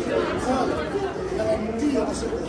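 Several people chattering at once, overlapping voices of a crowd of pedestrians inside a tiled foot tunnel.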